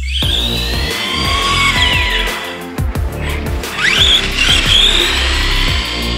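Electronic background music with a heavy bass beat and gliding synth tones.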